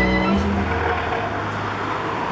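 Road traffic on a multi-lane city avenue: cars passing by as an even rush of engine and tyre noise. The tail of a song is heard fading out about half a second in.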